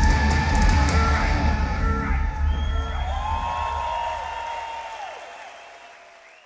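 A live metal band plays at full volume, heavy on drums and bass guitar, as a song finishes. About halfway through, held high shouts rise over the band, and the whole sound then fades steadily away.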